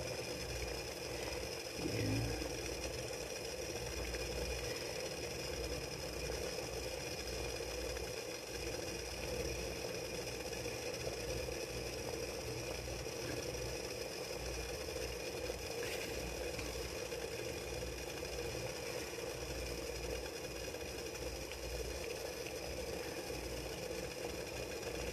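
Water boiling steadily in the base of an electric food steamer, a continuous low bubbling rumble as it steams rice cakes in the tray above.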